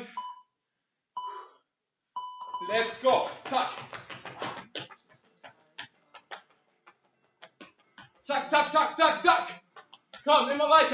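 An interval workout timer's countdown: three steady beeps about a second apart, the last one leading into the work interval. Then light, irregular foot taps on the floor from fast on-the-spot skipping, between bursts of a man's voice.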